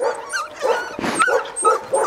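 Young puppies giving a quick run of short, high-pitched yips and whines as they play, about five or six calls in two seconds, with a single sharp click about a second in.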